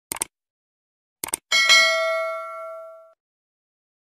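Subscribe-button animation sound effect: a quick double click, another double click about a second later, then a bright notification-bell ding that rings out and fades over about a second and a half.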